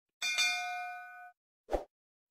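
Notification-bell sound effect from a subscribe animation: a bright bell ding, struck twice in quick succession, rings for about a second and fades. A short pop follows near the end.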